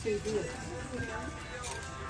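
Background music playing with faint voices murmuring, and no distinct event.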